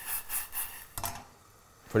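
Tarragon, shallot and white wine vinegar reduction sizzling in a stainless steel saucepan over a gas flame, cutting off about a second in.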